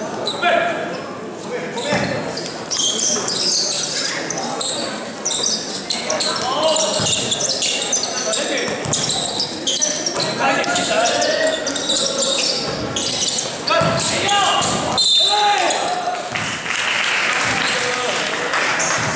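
Basketball bouncing on a wooden gym floor during live play, with players' voices and shouts mixed in, heard in a large indoor hall.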